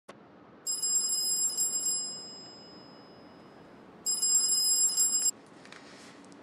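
Telephone ringing with a high, trilling electronic ring: two rings about two seconds apart, the first trailing off slowly.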